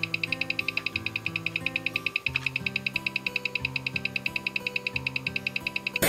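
Citizen Cosmotron electromagnetic-balance watch ticking, amplified through a timegrapher: an even, fast tick of about ten beats a second, its 36,000 bph super high beat, running at a rate the timegrapher reads as 64 seconds a day slow. Background music plays underneath.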